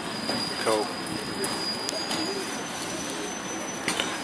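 A long, high, steady squeal of tram wheels on the rails, shifting to a slightly higher pitch about halfway through, over the hubbub of a busy street with a sharp click near the end.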